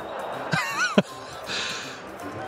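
Arena audience gasping and murmuring in shock as a player's water glass shatters, with a sharp knock about a second in.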